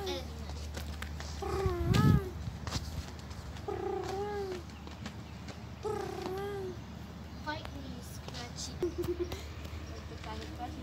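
A cat meowing from under a parked car: four drawn-out meows that rise and fall, about two seconds apart. A brief loud low rumble comes about two seconds in.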